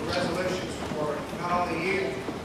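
Audience applause dying away into the chatter of many voices talking at once, with a few last scattered claps.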